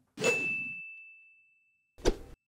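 A bright electronic ding sound effect: a single high tone that rings on and slowly fades, with a brief fuller swell at its start. A short sharp hit comes near the end as the intro transitions.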